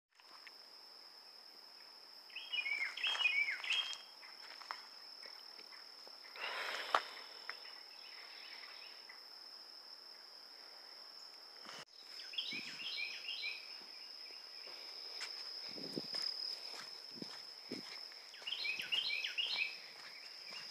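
A steady high insect trill runs throughout. A songbird sings a short phrase of quick descending notes three times: about two and a half seconds in, about twelve and a half seconds in, and near the end. Soft footsteps on a dirt trail follow in the second half.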